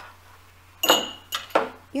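Small kitchen dishes clinking on a tabletop as the star-shaped ceramic dish of yeast is picked up: one sharp ringing clink about a second in, then two lighter knocks.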